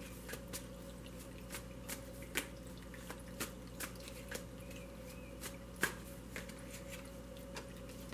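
Small tabletop water fountain dripping and trickling faintly: irregular soft ticks of falling water, one or two a second, over a steady low hum.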